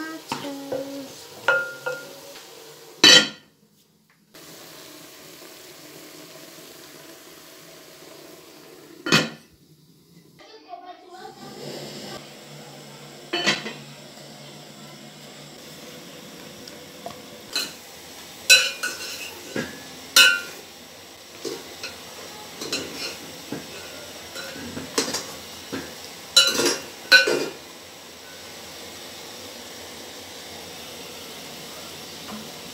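A wooden spoon stirring chicken and tomatoes in an aluminium cooking pot, knocking and clinking against the metal pot at irregular moments, over a steady low sizzle of the food cooking. The sound drops out briefly twice.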